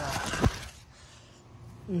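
A brief vocal sound, then a single dull handling thump about half a second in, followed by quiet.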